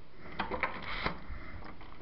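A door being eased shut quietly: a few soft clicks and knocks in the first second or so, over a low rumble.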